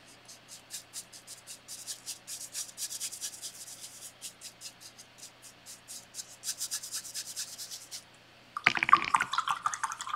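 Paintbrush scrubbing acrylic paint onto the edge of a canvas in quick, short, scratchy strokes, several a second, stopping about eight seconds in. A voice starts near the end.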